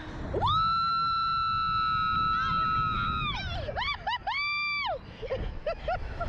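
A female rider screaming as the Slingshot reverse-bungee ride launches her into the air. She holds one long, high scream for about three seconds, lets out a few short yelps, then gives a second, shorter scream.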